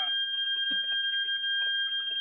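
A steady high-pitched electronic tone, like a continuous beep, starts suddenly and holds at one pitch, with faint background noise beneath it.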